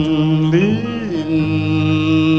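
A female jazz singer holds a long, sustained sung note with a slow swoop up and back down about half a second in, over low bass notes from her trio.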